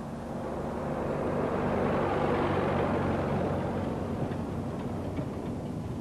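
Engine noise: a steady low drone with a rushing noise on top that swells about two seconds in and slowly eases off.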